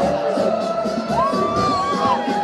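Loud live concert music with a steady beat over a cheering, shouting crowd. One voice rises into a long high held note about halfway through.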